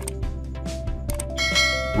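Background music, with a bright bell chime ringing out about a second and a half in and held: the notification-bell sound effect of a subscribe-button animation.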